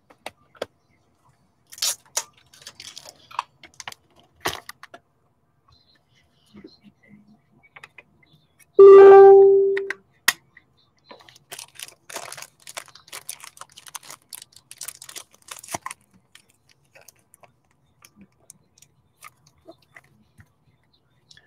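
Trading cards and clear plastic card holders being handled: scattered soft clicks and crinkles. About nine seconds in, a single loud steady tone sounds for about a second and then dies away.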